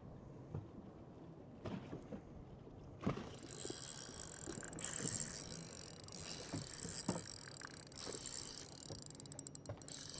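A fishing reel being cranked while a hooked fish is fought, heard as a steady hiss of turning gears with small mechanical clicks. A quick run of rapid clicks comes near the end.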